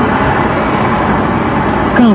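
Steady rushing noise inside a stationary car's cabin: the air-conditioning blower running over the idling engine.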